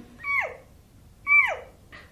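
A woman making two high-pitched squeaks with her voice, about a second apart, each sliding quickly down in pitch: an imitation of underwater 'mermaid language' squeaks.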